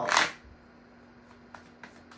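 A tarot deck being shuffled by hand: a short, sharp rustle at the start, then a few faint taps of cards sliding over one another.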